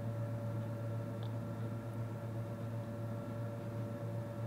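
Steady low mains hum from an energised toroidal mains transformer, with fainter steady higher tones above it.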